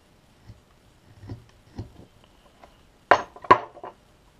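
A carving knife makes a few small, quiet cuts in wood. About three seconds in come two sharp clacks and a few lighter ticks, as the knife is set down on the wooden tabletop among the other carving tools.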